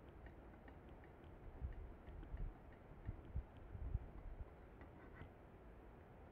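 Faint, irregular light ticks of a stirrer or probe against a glass jar of seawater being mixed, with a few low handling thumps in the middle.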